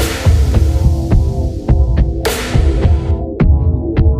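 Background music: an electronic track with a steady kick-drum beat, about two beats a second, under held synth chords, with a cymbal-like swell about two seconds in.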